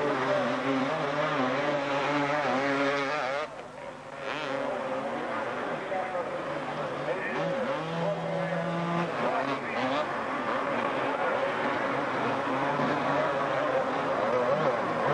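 Several 250cc two-stroke motocross bikes racing, their engine notes rising and falling as the riders work the throttle. The sound dips briefly about three and a half seconds in.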